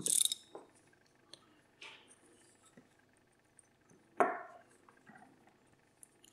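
Small metal clicks and scrapes of a Miwa DS wafer lock's core being slid out of its housing, with one sharper metallic clink about four seconds in.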